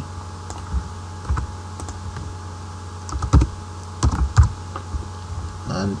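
Computer keyboard typing: a few scattered keystrokes, the loudest a little past the middle, over a steady low hum.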